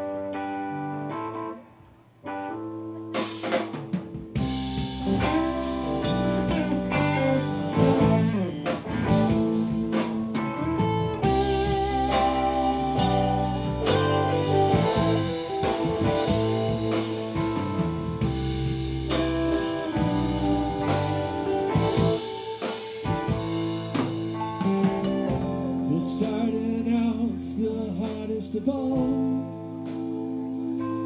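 Live band of electric guitars, bass, keyboard and drum kit playing the instrumental opening of a song. It starts with held chords, drops out briefly, then the full band comes in with drums about three seconds in and plays on steadily.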